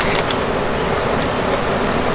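Steady rush of white water tumbling over river rapids.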